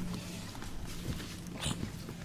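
Faint handling noises of paperback books being touched and shifted on a stack, a few soft knocks and a brief rustle near the end, over a low steady hum.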